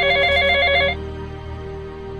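Telephone ring: a fast warbling electronic trill lasting about a second that cuts off suddenly, over background music.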